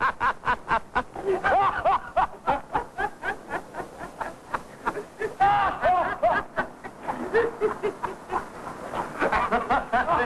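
Men laughing hard in a long, unbroken fit of rapid, breathy laughter, several laughs a second.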